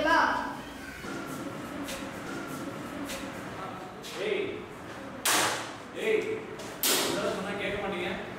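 Two sharp, loud smacks about a second and a half apart, with low children's voices murmuring around them.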